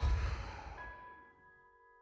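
A heavy sigh: a sudden breathy rush that fades over about a second, over soft, sustained piano music.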